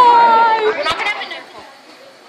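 A girl's voice calling out one drawn-out, high-pitched shout, likely a last 'bye', lasting under a second. A sharp click follows, then only faint room sound.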